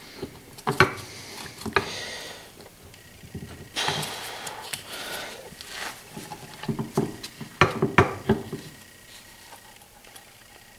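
Hand tools clicking, knocking and scraping against a Honda HRT216 lawnmower transmission case as its RTV-sealed halves are pried apart. There is a stretch of scraping and rustling about four seconds in and a quick cluster of knocks near the end.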